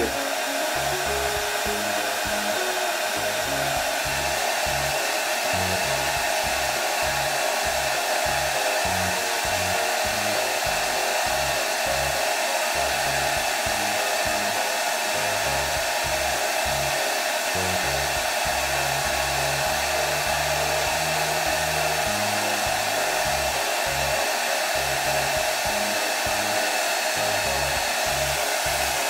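Hair dryer blowing steadily, warming the freshly applied coating on a fishing rod's thread wraps to drive out air bubbles.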